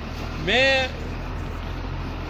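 A man's voice saying one short word about half a second in, over a steady low background rumble.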